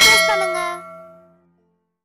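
A bell 'ding' sound effect struck once, ringing with several steady tones and dying away within about a second and a half.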